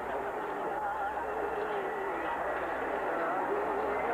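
Voices singing or chanting drawn-out, wavering notes over a steady noisy background with a low hum.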